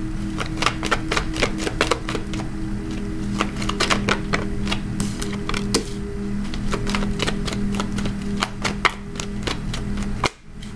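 Tarot cards being handled and laid out on a wooden table: an uneven run of light clicks and taps. Soft background music with steady low notes plays underneath.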